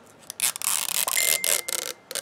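Plastic wrap of a toy ball being torn open along its pull strip, a rasping, crackling tear that starts shortly after the beginning and stops near the end, with a short steady tone partway through.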